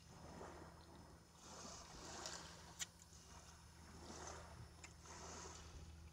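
Near silence: faint washes of noise that swell and fade every second or two, with a single sharp click a little under three seconds in.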